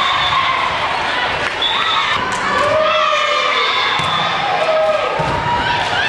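Volleyball gym sounds: young players' and spectators' voices shouting, calling and cheering in overlapping drawn-out calls, with a few sharp thumps of the ball being hit or bounced.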